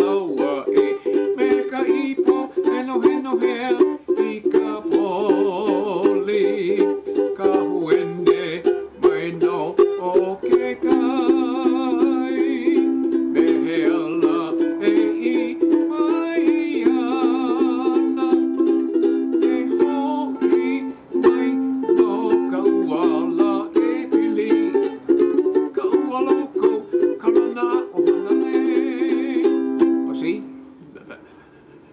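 Ukulele strummed in a quick, steady rhythm through a tune with many chord changes. The playing stops abruptly at the very end.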